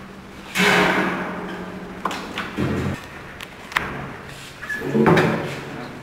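Work-hall clatter: a loud scrape of metal on a stainless-steel table that fades over about a second, then a few sharp clicks and knocks, over a steady low hum.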